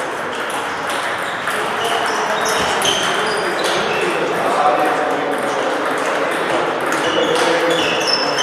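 Table tennis balls being hit and bouncing on tables and paddles across a training hall: many quick, irregular clicks and pings from several tables at once.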